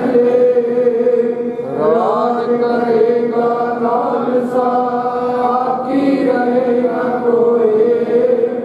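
A man leading a Sikh devotional prayer chant into a microphone, singing in long held tones, with a rising glide about two seconds in.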